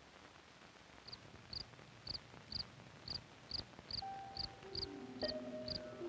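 Opening of an old 16mm film soundtrack over a steady hiss: short high chirps repeat about twice a second with faint low pops. Sustained music notes come in about four seconds in and build as more notes join.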